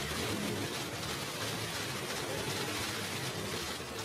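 Many camera shutters clicking rapidly and overlapping into a steady crackle.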